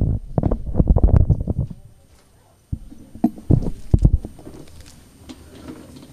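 Microphone handling noise as a handheld microphone is set into its stand clip: irregular low thumps and rubbing for about two seconds, then, after a short lull, a few more knocks.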